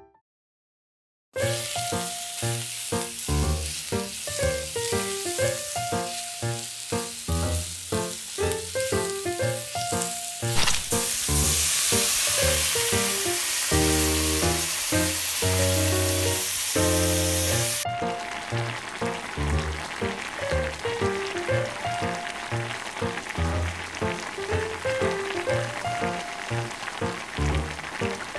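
Background piano music over the sizzle of minced vegetables and ground pork frying in a pot. The music starts after about a second of silence. The sizzle grows much louder in the middle for about seven seconds, then drops back to a fainter hiss.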